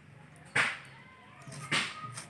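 Two short, sharp sounds about a second apart, each dying away quickly, from a knife and food being handled over a steel bowl.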